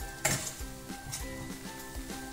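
A metal spatula stirring and scraping a sticky coconut-and-jaggery filling in a stainless steel frying pan, with a light sizzle and one sharp, loud scrape about a quarter second in, over background music.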